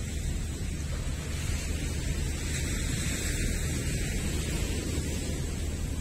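Steady rushing noise of wind on the microphone mixed with small waves washing onto the shore.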